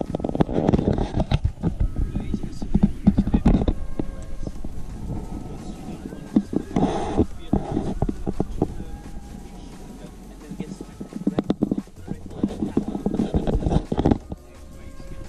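A man talking, muffled and hard to make out, with frequent short knocks and rubbing noises from the camera's waterproof housing.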